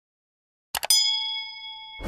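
Subscribe-button animation sound effect. About three-quarters of a second in there are two quick mouse clicks, then a bright notification-bell ding that rings on and slowly fades.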